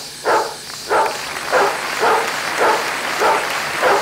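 A dog barking in a steady rhythm, about seven barks in four seconds, over a steady hiss.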